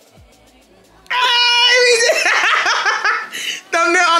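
Two women bursting into loud, high-pitched shrieking laughter about a second in, after a brief lull, with a short break and a second outburst near the end.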